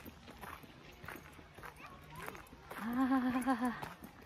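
Faint footsteps on a gravel path, then about three seconds in a woman's short laugh that pulses several times.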